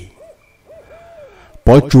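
Three faint hooting calls, two short ones and then a longer one that falls away, like an owl's. A man's narration resumes near the end.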